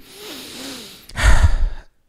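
A man breathes in, then lets out a heavy, exasperated sigh about a second in, the exhaled air hitting a close microphone.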